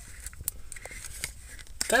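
A few faint clicks and ticks, the sharpest about half a second in, as a hand grips and wiggles a fake plastic Brembo-style cover that sits over the brake caliper.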